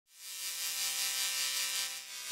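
Static-like hiss and buzz of a glitch intro sound effect, swelling in over the first half second and then holding steady.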